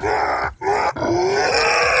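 A man's growling, grunting goblin character voice making gibberish noises in three rough growls, the last the longest, in place of words.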